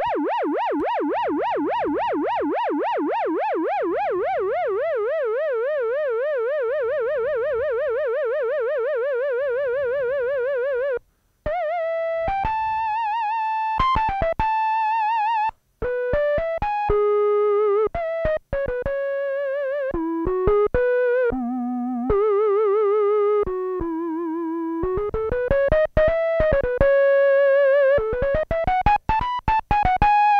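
Behringer DeepMind 12 analog synthesizer playing a soft mono flute patch (a square wave with the filter closed down) with sine-wave LFO vibrato from the mod wheel. First comes one long held note whose wide vibrato narrows over the first few seconds. Then comes a melody of short single notes, still wavering, with a few notes sliding upward in pitch near the end.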